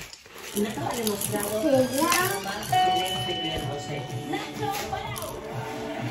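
Electronic toy music from a baby play gym's piano keyboard, with one held note in the middle, alongside voice sounds.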